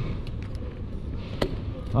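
Steady low rumble of a bicycle rolling slowly along a city street, with wind and road noise on the camera microphone, and one sharp click about a second and a half in.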